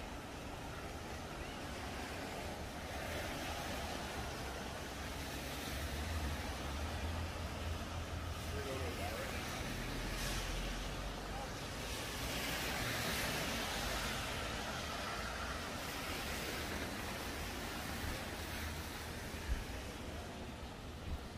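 Traffic on a rain-soaked city street: a steady hiss of tyres on wet pavement, swelling as vehicles pass, loudest from about ten to fifteen seconds in, with a low engine rumble from a heavy vehicle midway.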